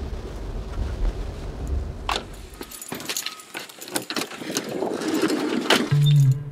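Low, steady road rumble of a moving car heard from inside the cabin, which cuts off abruptly about three seconds in. It is followed by scattered clicks and knocks.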